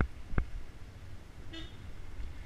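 Jolting thumps as the mounted action camera rides over the rough, potholed dirt road, two sharp knocks in the first half second over a steady low rumble of riding. About a second and a half in, a short, fainter vehicle-horn toot is heard.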